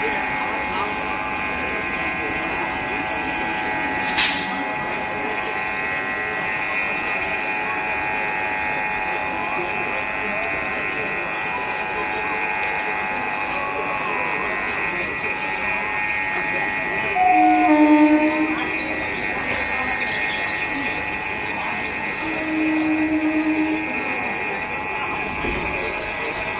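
An electric multiple-unit local train standing at a platform, its equipment giving a steady whine, with two short low horn blasts from the train about 17 and 22 seconds in, the first the louder.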